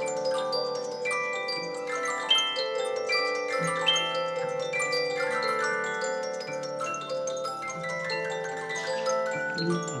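Music box playing a melody: many bell-like plucked notes that overlap and ring on as they fade. The mechanism is built into a spaceship-shaped object and sounds from its pinned cylinders.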